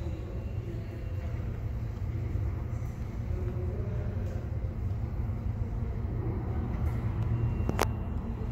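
Low, steady rumble of an R160 subway train approaching through the tunnel, with a single sharp clank near the end.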